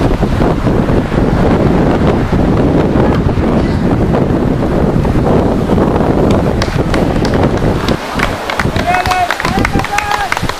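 Wind buffeting the camera microphone, a dense low rumble that eases a little near the end, when a few short shouted voices come through.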